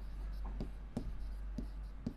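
Pen writing on a board: a series of light taps and short scratches as the strokes are made, over a steady low hum.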